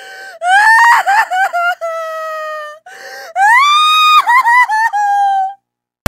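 Exaggerated crying. A ragged sobbing inhale, then a long high wail that breaks into short sobs; a second inhale about three seconds in, and a second wail that rises in pitch, holds, and breaks into stuttering sobs before stopping shortly before the end.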